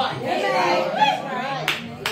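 Congregation members calling out in high, rising-and-falling exclamations in response to the preacher, then a sharp handclap near the end.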